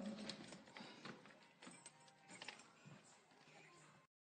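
Near silence with a few faint clicks and rustles that fade out.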